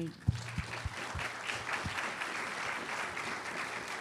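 Audience applauding steadily, starting just after a speaker's closing thanks. There are a few low thumps in the first two seconds.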